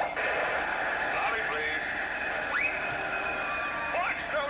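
Cartoon sound effect of wind rushing in through an aircraft's opened emergency exit door, a steady rush that starts abruptly, with a rising whistle about two and a half seconds in, played through a laptop speaker.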